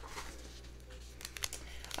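Packaged tea sachets crinkling as they are handled, with a few short, sharp crinkles about a second and a half in.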